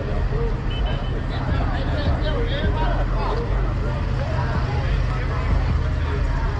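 A car engine idling with a steady low rumble, while people talk in the background.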